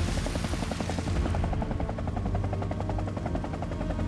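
Helicopter hovering, its rotor chopping in a fast, even beat over a steady low engine drone.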